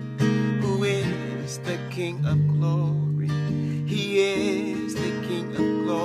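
Acoustic guitar with a capo, strumming chords that ring on between strokes.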